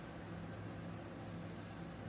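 Faint, steady low hum with light hiss: quiet kitchen room tone.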